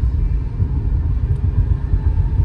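Steady low rumble of road and drivetrain noise heard inside the cabin of a 2013 Subaru Impreza driving at highway speed.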